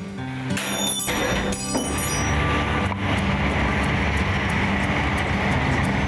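Vehicle traffic rumbling steadily under background music.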